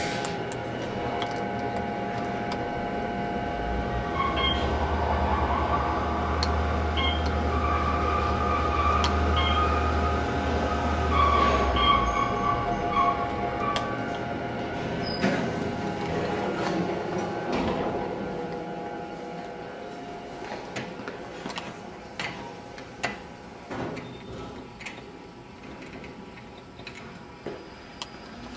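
Otis geared traction elevator running during a ride, heard inside the car: a steady machine hum and whine, with a low drone for several seconds in the first half. It fades in the second half, with scattered clicks and knocks.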